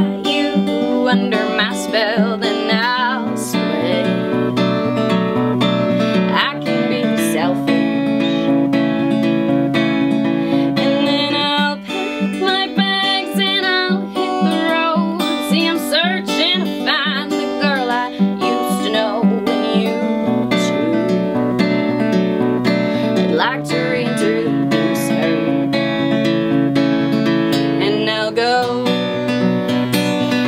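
A woman singing to her own strummed acoustic guitar, a live solo folk song with a steady strummed rhythm and her voice coming in and out in phrases over the chords.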